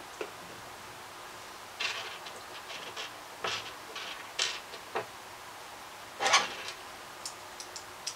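Hands handling small screws and fridge-handle hardware on a tabletop: a string of short clicks and taps, with a louder brief scrape about six seconds in. No drill is running.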